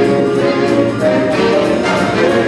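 A big band playing a swing number live, horns over a drum kit keeping a steady beat on the cymbals.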